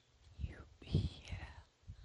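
A woman speaking softly in a near-whisper, muttering letters to herself under her breath as she spells out a word.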